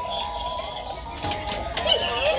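Animated Halloween ghost figure playing a song with electronic singing as it moves.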